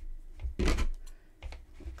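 Handling noise from hands knotting yarn ends on a stuffed crocheted toy: rustling with a few brief knocks, the loudest a little over half a second in.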